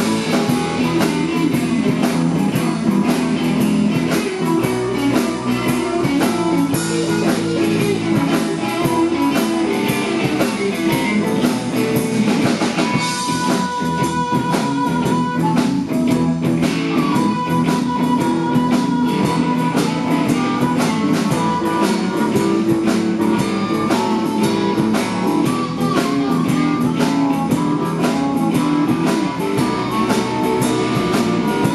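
Live blues band playing an instrumental stretch: electric guitars over a steady drum beat, with the lead guitar holding long sustained notes around the middle.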